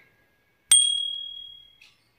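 A single bright bell ding, struck about two-thirds of a second in and ringing away over about a second. It is a notification-bell sound effect for a subscribe-button prompt.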